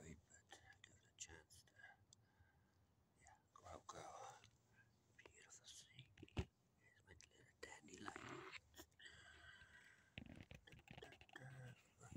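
Near silence, with faint breathy, whisper-like sounds now and then and a single sharp click about six seconds in.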